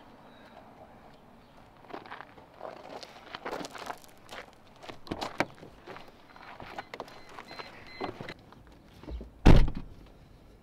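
Footsteps crunching on gravel, a string of small irregular knocks, then a car door slamming shut with a loud, deep thump near the end.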